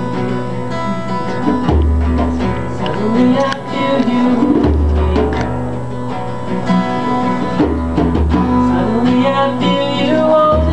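Acoustic guitar played live, with notes ringing over a deep bass note that sounds for about a second roughly every three seconds.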